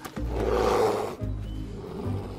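Grizzly bears roaring and growling at each other in a fight, loudest over about the first second, with background music underneath.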